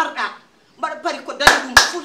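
Two sharp hand claps about a quarter second apart, in the middle of a woman's lively speech.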